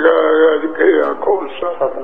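Speech only: a man speaking Punjabi in a religious discourse, his voice carried through a microphone.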